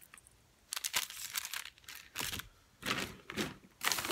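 Plastic packaging crinkling and rustling in irregular bursts as it is handled, starting about a second in.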